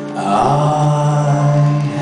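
A male singer holds one long, low sung note.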